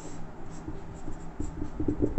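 Marker pen writing on a whiteboard.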